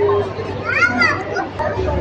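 Background voices of visitors, with a child's high-pitched voice rising and falling about halfway through.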